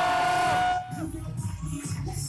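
Audience clapping with a long high whoop that slides up at its start and holds steady. The whoop and most of the clapping stop about a second in, leaving a low murmur of room noise.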